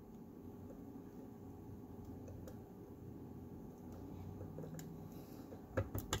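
Faint handling sounds of a small metal spatula pressing and tapping crushed opal and ashes flat into the channel of a stainless steel ring, with a sharp click near the end.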